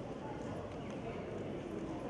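Low, steady hall ambience with faint, indistinct voices, in a pause between announcements over the PA.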